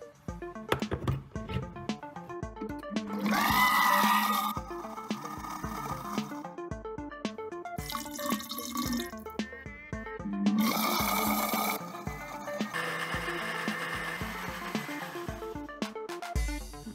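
Countertop blender running in bursts, its motor starting with a rising whine about three seconds in, as it purées cooked pasta bolognese into a paste; water is poured into the jar in between. Background music with a steady beat runs underneath.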